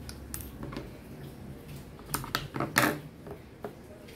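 Handling noise from hands working a small piece of fabric and stuffing on a tabletop: scattered light clicks and rustles, with a quick run of louder taps a little past halfway.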